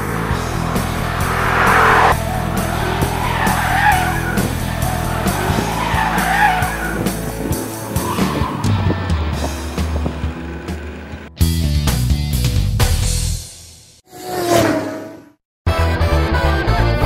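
Tyres of a 2017 Ford Mustang GT squealing in long wavering slides as the 5.0-litre V8 runs hard through drifts and tyre-smoking donuts, under rock background music. In the last seconds the car sound gives way to the music alone, a swelling sweep and a short break.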